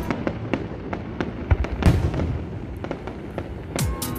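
Aerial fireworks shells bursting: a string of booms and sharp crackling pops, the loudest cluster about two seconds in.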